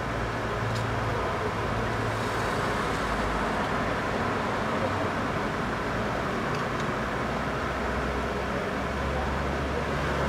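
Steady city street traffic noise with a low hum underneath; the low rumble grows as a car passes near the end.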